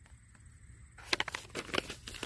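Irregular crinkling and rustling of paper and packaging being handled, starting about a second in after a quiet moment.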